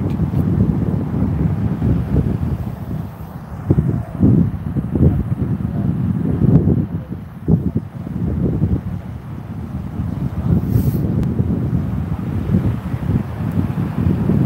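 Wind buffeting the microphone outdoors: an uneven, gusting low rumble.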